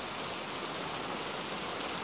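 Steady rainfall, an even hiss of rain with no breaks.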